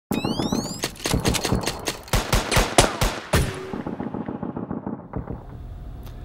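A rapid, uneven string of gunshots, about fifteen in three and a half seconds, opening with a brief rising whine. The shots end in a reverberant tail that fades out over the next second or two.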